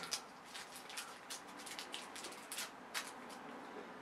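Faint, irregular crinkling and crackling of a small toy blind bag's wrapper being torn open and handled.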